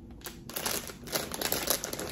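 Clear plastic bag crinkling and rustling as it is handled, in an irregular run of quick crackles.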